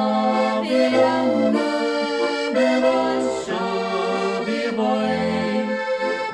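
Button accordion playing a traditional folk tune: held chords that change every second or so, over short low bass notes about every two seconds.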